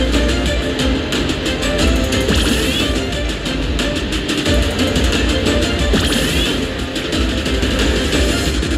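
Money Link video slot machine playing its loud, continuous bonus-round music with spin sound effects during the hold-and-spin feature, as the remaining free spins count down.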